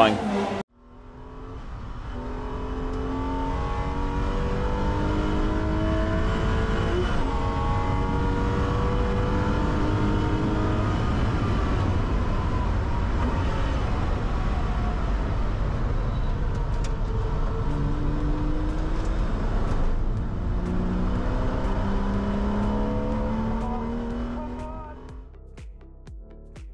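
Porsche Boxster S race car's 3.2-litre flat-six heard from inside the cockpit, revving up again and again as it pulls through the gears, each rise in pitch cut by an upshift, over a steady rush of road and wind noise. The sound fades in just after the start and fades out near the end.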